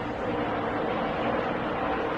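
Stock car engines running at speed on the track, a steady drone with no change in pitch.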